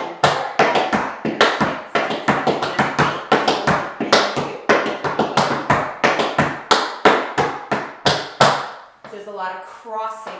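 Metal taps on tap shoes striking a wooden tap board in quick, uneven strings of clicks: a riff sequence with a crossed front-back and heel drops, danced as a demonstration. The tapping stops shortly before the end.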